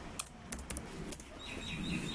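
A few separate computer keyboard keystrokes as a search word is typed, with faint high chirping in the background starting about halfway through.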